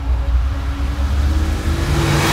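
Car engine running hard at speed: a loud, steady, deep rumble.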